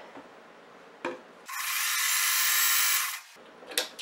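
Sewing machine running steadily at speed for just under two seconds as it stitches a short seam joining two quilt squares, starting and stopping abruptly. A single click comes about a second in.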